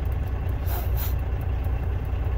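Vehicle engine idling, a steady low rumble heard from inside the cab.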